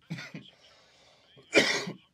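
A man laughing and coughing, with short bursts early and one loud, harsh cough near the end.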